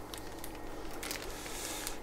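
Faint rustle and crinkle of a water-filled plastic fish bag being handled, with a couple of light ticks.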